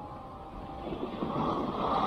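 Rushing, scraping noise of gliding down a snow slope, swelling about a second in as speed builds: board edges sliding over snow mixed with air rushing past the camera.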